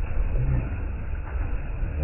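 Small waves washing and splashing against a sloping concrete shore, over a heavy, uneven low rumble.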